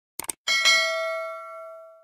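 Sound-effect mouse clicks followed by a bright notification-bell ding, struck twice in quick succession, that rings on and fades away over about a second and a half.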